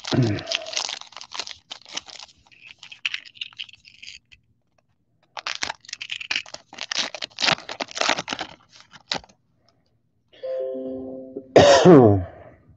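Foil wrapper of a 2020 Diamond Kings baseball card pack being torn open and crinkled by hand, in two spells of crackling with a pause between. A loud cough comes near the end.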